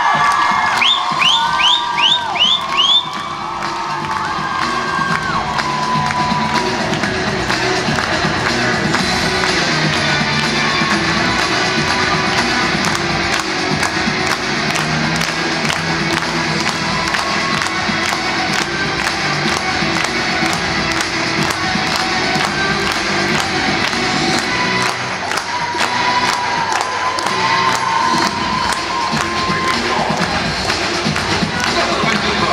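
Skating program music with a steady beat, played loud over an arena's sound system, with a large crowd cheering over it. A run of quick rising whistles sounds in the first few seconds.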